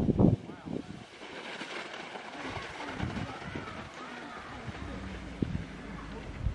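Excited sled dogs barking and yelping, loud for a moment at the start and then faint and distant for the rest.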